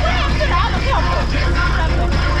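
Open-air passenger tram moving, a steady low rumble of engine and road, with passengers' scattered chatter and exclamations over it.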